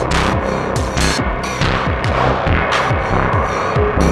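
Electronic music from analog synthesizers and a drum machine: a dense bass line of short, repeated falling-pitch hits under evenly spaced percussion strikes and sustained synth tones.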